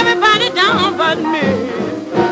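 Swing-style rhythm-and-blues band music, with horn lines sliding up and down in pitch.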